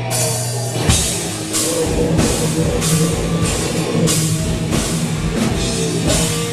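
Live deathcore/metal band playing: distorted electric guitars over a drum kit, with a hard hit splashing into the highs about twice a second.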